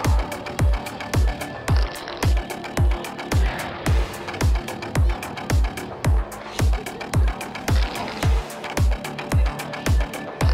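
Background music with a steady kick-drum beat, a little under two beats a second.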